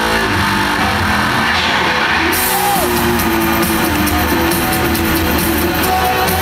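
Live rock band playing loudly in an arena, heard from the audience seats, with electric guitar and drum kit. The top end fills in about two seconds in.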